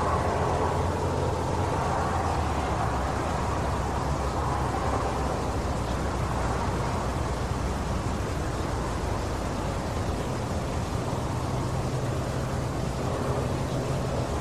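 Steady background noise from a surveillance camera's audio, an even hiss with a low hum underneath and no distinct knocks or impacts.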